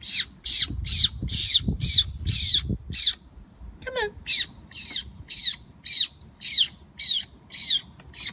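Short, high-pitched squeaks, each sliding downward in pitch, repeated about twice a second: a call made to bring a grey squirrel to food. A low rustle runs under the first three seconds, and the squeaks stop briefly around the middle.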